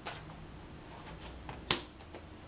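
A tarot card is drawn from the deck and laid on the table. There is a light click at the start, a few faint ticks, then a single sharp card snap near the end.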